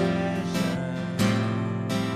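Live worship band music led by an acoustic guitar strumming chords, a new strum roughly every second.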